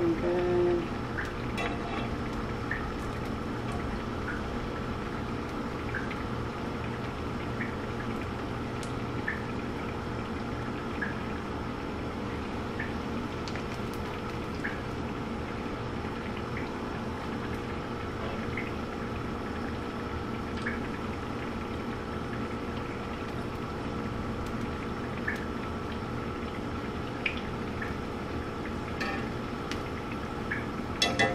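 Battered onion rings frying in hot oil in a skillet: a steady sizzle with small pops and crackles every second or so.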